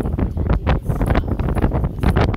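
Wind buffeting an outdoor microphone: a loud, uneven low rumble.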